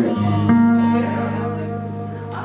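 Acoustic guitar chord strummed near the start and again about half a second in, left ringing and slowly fading.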